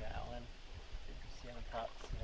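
Short snatches of indistinct talk over water sloshing around a seine net bag being handled in shallow river water.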